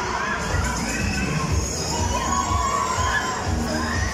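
Riders on a fast-spinning fairground ride screaming and shouting, many voices overlapping in rising and falling cries, over a bass beat of ride music about twice a second.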